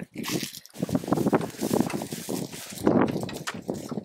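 Goat hooves and footsteps crunching and rustling in dry hay and straw close by, a dense run of small crackles and taps.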